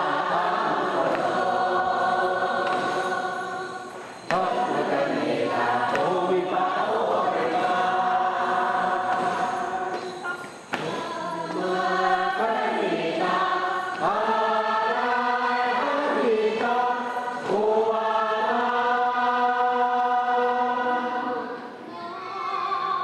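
A large choir of Taiwanese aboriginal congregants singing together in their own language, in phrases of long held notes, with two abrupt breaks about four and eleven seconds in.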